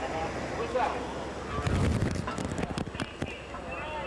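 Indistinct voices, then a brief low rumble about halfway through followed by a run of sharp clicks and knocks.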